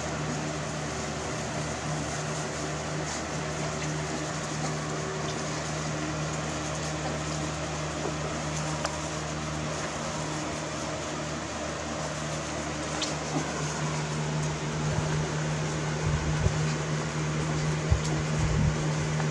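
Steady mechanical hum with a constant low droning tone, like a room fan or air-conditioning unit running. A few soft bumps come near the end.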